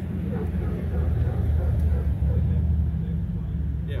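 A vehicle engine idling close by, a steady low rumble that gets louder about a second in.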